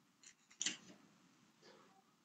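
A few quick clicks of a computer mouse button: a faint one, then a louder pair, then a softer click near the end.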